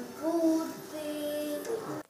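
Children singing together, holding a few long, steady notes.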